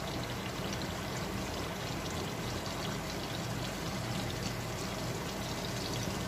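Neyyappam, a sweet rice-batter fritter, deep-frying in hot oil, with a steady sizzle and bubbling and fine crackles.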